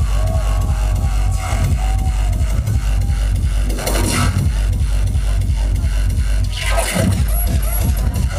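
Industrial hardcore electronic music played loud through a club sound system and recorded from within the crowd, driven by a steady, heavy kick drum, with a wavering synth tone over it for the first few seconds.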